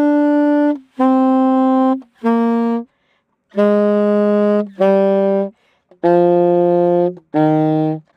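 A saxophone plays a slow syncopated exercise: single held notes with a firm tongued attack, each starting off the beat and tied over, stepping down the scale note by note with short breaks between them.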